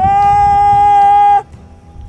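A man's loud, long call through cupped hands: the pitch swoops up at the start, then holds one steady note for about a second and a half before cutting off abruptly.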